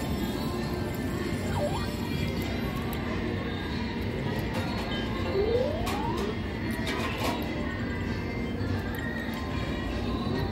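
Casino gaming-floor ambience: continuous electronic music and jingles from slot and video poker machines. A short rising electronic tone sounds about five seconds in, and a few sharp clicks follow around six to seven seconds.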